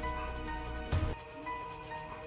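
A broken-off piece of yellow Crayola colored-pencil lead, held between the fingers, rubbing across paper as it shades, heard under steady background music.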